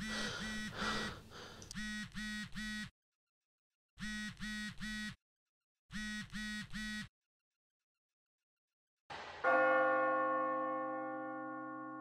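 A phone vibrating in short buzzes, three at a time with pauses between the groups. About nine seconds in, a single deep bell stroke rings out and slowly fades.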